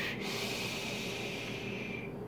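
A long, steady draw on a Geek Vape Athena squonk mod with a rebuildable dripping atomizer (RDA): air hissing through the atomizer's airflow with a thin steady whistle, held throughout and stopping right at the end.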